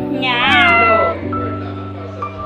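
A cat's meow, one drawn-out call that falls in pitch toward its end, over background music.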